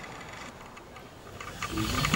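Quiet room tone with a low steady hum, and a few faint small sounds of movement near the end.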